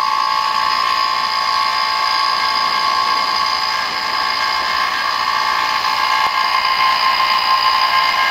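Electric A/C vacuum pump running with a steady whine, evacuating a car's air-conditioning system to draw out moisture and impurities before a refrigerant recharge.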